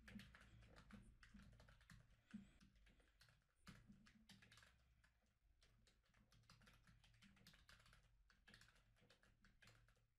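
Faint, rapid typing on a computer keyboard: a quick run of keystrokes entering drawing hotkeys, over a low steady hum.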